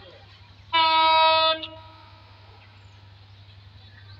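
A single horn blast from a train, most likely the approaching locomotive: one steady note held for just under a second, starting and stopping abruptly, with a faint tail after it.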